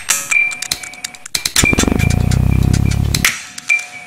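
Experimental electronic sound-design track of sharp clicks and ticks over a steady high tone, with a low buzzing drone that swells up in the middle and breaks off, and a short burst of hiss near the end.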